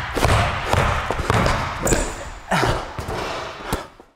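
A basketball bouncing on a hardwood gym floor in a series of dribbles, about two a second, with a short high squeak about two seconds in. The sound fades out at the end.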